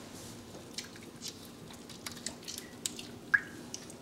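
Faint, scattered wet clicks and drips from hands squeezing and shaping a piece of warm fresh mozzarella curd, pressing out the milky whey; one sharper drip-like plink about three seconds in.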